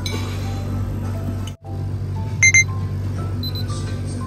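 Background music, with two quick, high-pitched electronic beeps about two and a half seconds in, louder than the music.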